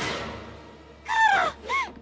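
The fading tail of a crash as a window is smashed through, then two short harsh cries that rise and fall in pitch. The first cry, about a second in, is the louder and longer.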